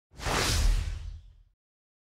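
Intro whoosh sound effect with a deep boom under it, starting sharply just after the start and fading out in about a second and a half.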